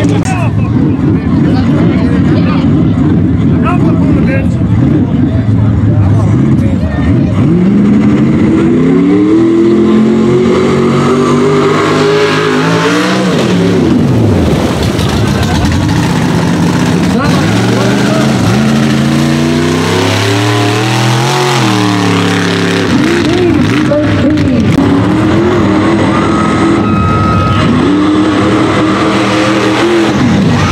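Mud bog trucks' big engines at full throttle, revving up and falling away several times as they power through the mud pit, with a long climbing rev about ten seconds in and another around twenty seconds.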